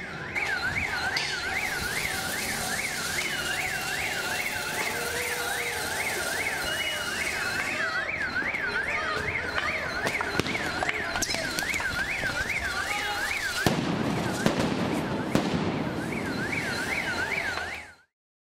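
An electronic alarm or siren wailing rapidly up and down, about two and a half sweeps a second, over street noise. A few sharp bangs stand out in the second half.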